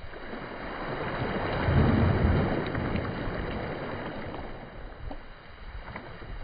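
Small Caspian Sea waves breaking and washing up over a sandy shore close to the microphone, a steady rushing hiss that swells to its loudest about two seconds in and then eases, with wind rumbling on the microphone.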